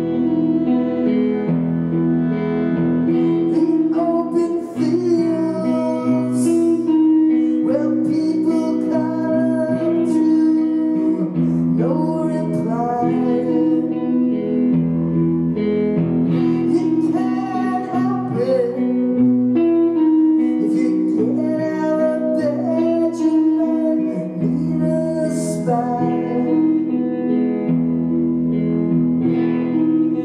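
Live band playing a song: electric guitar, electric bass and bowed violin over drums, with cymbal splashes now and then. The violin drops out near the end.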